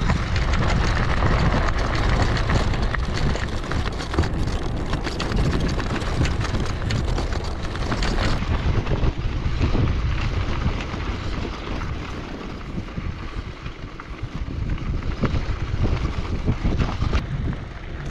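Recumbent bicycle's tyres rolling over a gravel road, with a steady crunch and many small clicks of loose stones, and wind buffeting the microphone.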